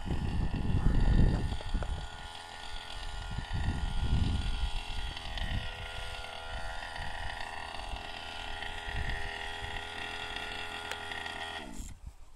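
Small two-stroke petrol engine of a large-scale HPI Baja RC buggy running at a distance, a steady buzzing note. Gusts of wind rumble on the microphone in the first few seconds. Near the end the note dips in pitch and cuts off abruptly.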